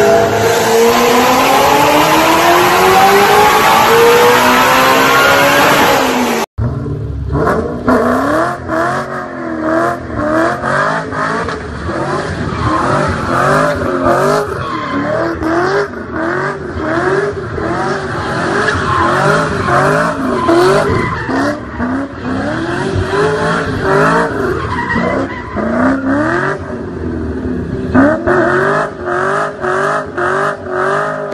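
Supercharged Ford Mustang V8 revving in the engine bay, its pitch falling steadily over several seconds. Then a Ford Mustang doing a burnout: the engine revs rise and fall over and over, about once a second, under the squeal of the spinning rear tyres.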